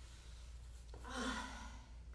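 A woman sighing out loud once, about a second in, a breathy exhale with a little voice in it that lasts under a second.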